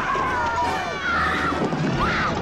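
Women screaming in terror, several high, wavering cries overlapping one after another, over the noise of a scuffle and running feet.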